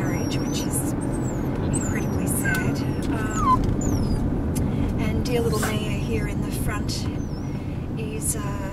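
Steady engine and road noise inside a moving Honda car's cabin, with a few short, high-pitched gliding whines from a small dog riding in the car.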